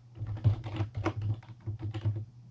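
Computer keyboard being typed on: a quick, uneven run of keystroke clicks, about six a second, as a line of code is entered.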